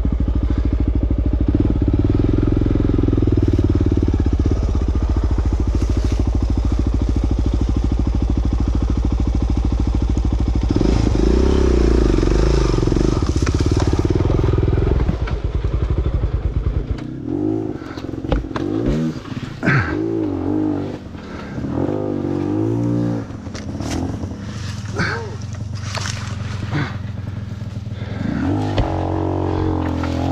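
Honda XR400 single-cylinder four-stroke dirt bike engine pulling hard at steady revs to carry momentum over an obstacle, with a rise in revs near the middle. In the second half the throttle is worked on and off in repeated short rising and falling revs, with knocks and clatter from the bike.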